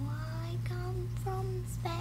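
A girl's wordless sing-song voice, a few short pitched notes that glide up and down, over a steady low hum.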